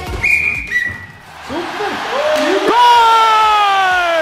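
A loud, long shout that rises in from about one and a half seconds and is held, falling slowly in pitch, over background music. Two short high tones sound in the first second.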